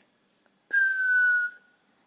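A boy whistles one clear note through pursed lips, about a second long, starting abruptly a little under a second in. The note slides slightly down in pitch as it fades, with a faint rush of breath around it.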